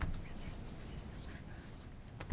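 Faint whispered speech in a quiet meeting room, with a brief click at the start.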